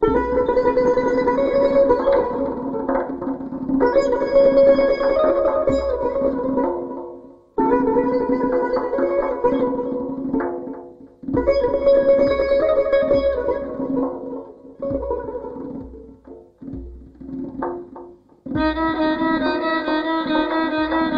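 Solo Persian plucked lute playing phrases in the Afshari mode, each phrase starting with a strong plucked attack and broken by short pauses. Near the end a violin enters with a sustained bowed line.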